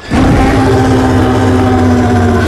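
Film-trailer sound design: a loud, low blast starts suddenly just after a pause and holds at one steady pitch.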